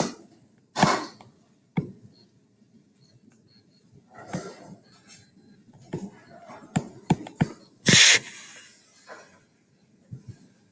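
Handling noise from a laptop being moved and a stylus drawing on it, picked up by the laptop's own microphone: scattered sharp knocks and taps, then a louder rough scrape about eight seconds in.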